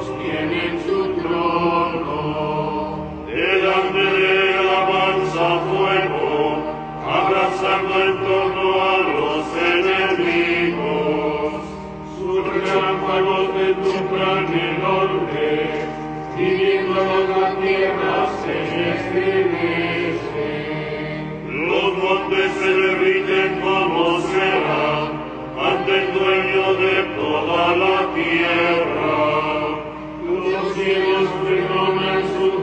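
Liturgical chant sung in phrases a few seconds long on sustained notes, with short breaths between phrases.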